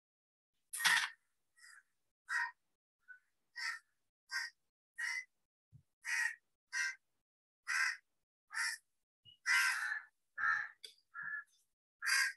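A crow cawing over and over: a dozen or more short, harsh caws, roughly one every half second to second.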